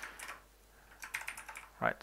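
Computer keyboard being typed on: two short runs of key clicks, one right at the start and another about a second in.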